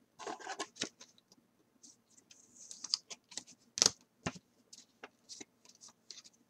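Trading cards being handled on a tabletop: soft slides and scrapes of card stock with scattered light clicks, and one sharper click a little before four seconds in.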